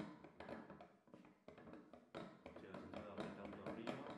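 Light metallic clicks and taps from a BOJ professional bench can opener as its crank handle is turned while a screwdriver is held in its cutting head. The clicks come in an irregular run, with a brief pause about a second in.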